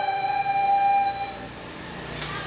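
Chinese traditional orchestra of erhu, dizi, pipa and ruan holding one sustained closing chord that stops a little over a second in.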